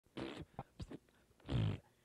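A few short, rough bursts of sound, the loudest about one and a half seconds in: an old lawn mower being cranked and failing to start.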